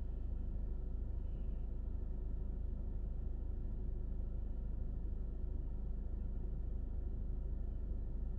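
Steady low hum inside a car cabin, with no other sound events.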